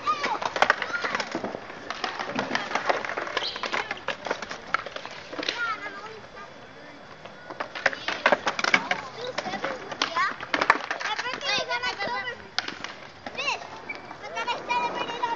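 Skateboard wheels rolling on a concrete ramp, with repeated sharp clacks and knocks of boards on the concrete, over children's voices chattering and calling out.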